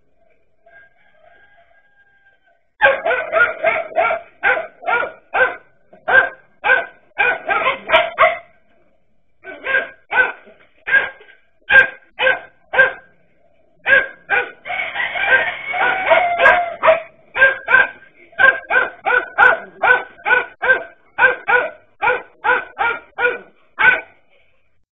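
Dachshunds barking hard and fast, about three sharp barks a second, starting about three seconds in, with a stretch of overlapping barking around the middle.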